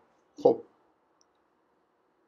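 A man says one short word, "khob" ("okay"), then the sound cuts to dead silence, as from noise suppression on a voice call.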